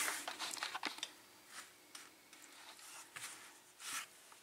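Faint, scattered light clicks and taps of small hard objects being handled, several in the first second and a slightly louder cluster near the end, with near silence between.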